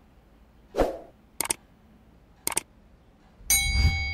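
Sound effects of an on-screen subscribe-button animation: a soft thump about a second in, two sharp clicks about a second apart, then a bright bell-like notification ding with a low boom under it near the end, ringing on.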